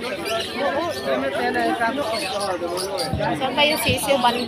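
Chatter of many people talking at once, with a few high chirps from caged birds near the end.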